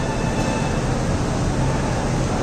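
Steady, even rumble of background noise in a hall, picked up during a pause in amplified speech, with no single clear source standing out.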